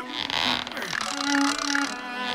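Spinning fishing reel being cranked as a cartoon sound effect: a short ratcheting whir in the first part, over background music with held notes.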